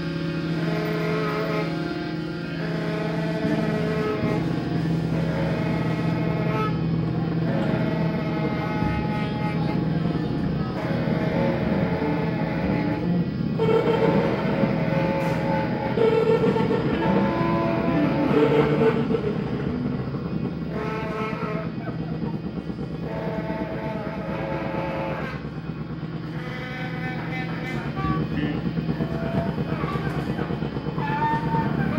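Live free-improvised noise rock from electric guitars and drums: a dense, loud, sustained wash of distorted tones with shifting held pitches and no steady beat.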